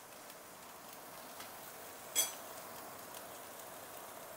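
Faint steady sizzling of tofu cubes frying in hot oil in a pan, with a single short clink of a utensil against a pot about two seconds in.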